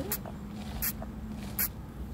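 Three short, sharp clicks about three-quarters of a second apart, over the steady low hum of a car's cabin.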